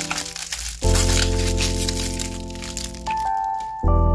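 Clear plastic wrapper crinkling as it is crumpled in the hands, over background music of held chords that change about a second in and again near the end.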